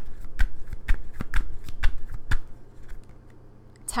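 A tarot deck being shuffled by hand: a quick run of sharp card slaps, about four or five a second, that stops a little over halfway through.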